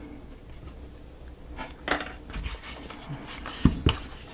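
Light clicks and knocks of laser-cut plywood model parts being handled as a spoked wooden wheel is brought to the cannon's axle: a few scattered clicks from about a second and a half in, with the loudest knocks just before the end.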